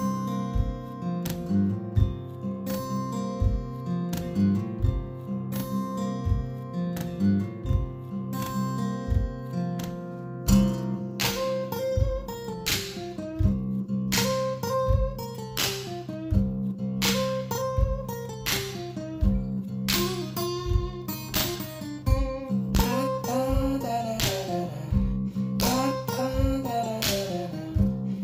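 Acoustic guitar instrumental solo: a picked melody with stepwise runs over sustained bass notes, and a low thump on about every beat. The playing gets busier about ten seconds in.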